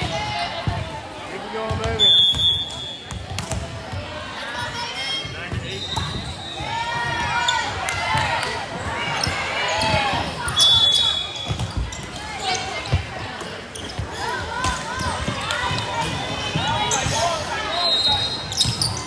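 Indoor volleyball rally in a gym: many voices of players and spectators calling and cheering, with sharp ball hits and a few short high squeaks.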